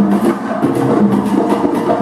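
Live salsa orchestra playing: a steady, driving percussion pattern of congas and timbales with sharp wood-block-like strikes over held notes from the band.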